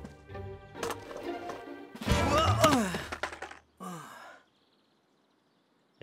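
Cartoon background music, then about two seconds in a sudden loud clatter with a cry falling in pitch as a boy tumbles off a skateboard. A short falling sound follows, and then it goes quiet.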